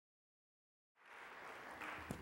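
Dead silence, then about a second in a faint, even sound of congregation applause fades in and grows slightly.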